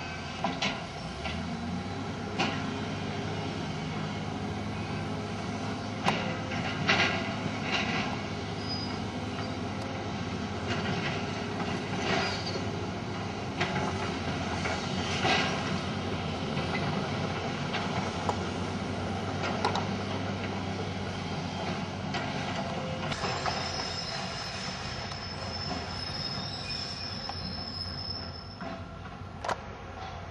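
Hydraulic excavator's diesel engine running steadily while it tears down a brick building, with scattered sharp knocks and cracks of breaking masonry. A thin high squeal sounds for a few seconds near the end.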